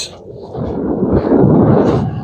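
Strong wind blowing across the microphone: a loud, low rumble that swells and dips with the gusts.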